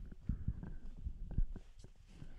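A string of soft, short low thumps and small clicks, about six in two seconds, picked up close on a sensitive microphone.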